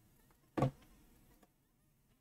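A mosquito whining faintly close to the microphone. A single short, sharp smack comes about half a second in.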